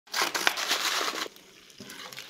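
Paper food pouch of dry pea-protein mince powder crinkling as it is handled, for a little over a second.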